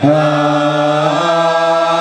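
People chanting together on one long held note, which shifts slightly in pitch about a second in.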